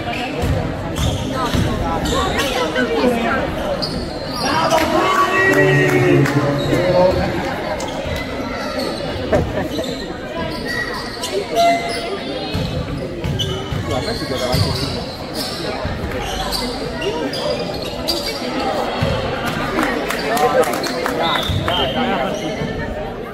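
A basketball bouncing and being dribbled on a wooden gym floor during play, irregular thuds echoing in a sports hall, with players' voices mixed in.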